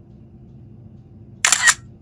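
A camera shutter click, once, short and sharp, about a second and a half in.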